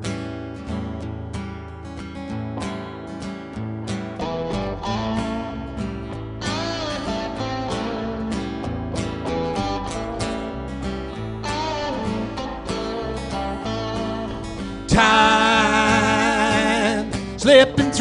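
Live band playing the instrumental intro of a country-style song: strummed acoustic guitar over bass guitar and electric guitar. A wavering lead melody comes in about six seconds in, and the sound gets louder about fifteen seconds in.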